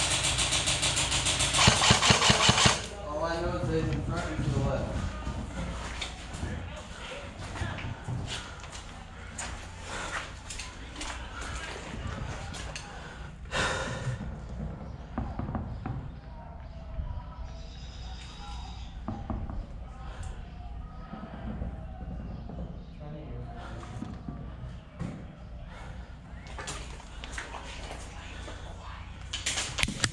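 Airsoft rifle firing a long rapid full-auto burst over the first three seconds, then scattered single shots and BB impacts, with another short burst about halfway through. Players' voices call out in the background.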